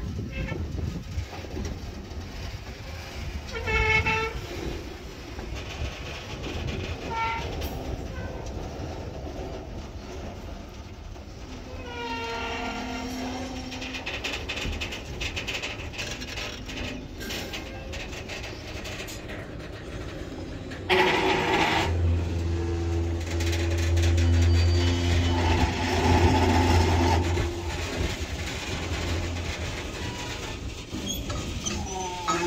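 Loaded grain hopper cars of a freight train rolling slowly past on the rails, with short pitched squeals now and then. About two-thirds of the way through, a loud sustained locomotive horn sounds for several seconds, over a strong low diesel hum.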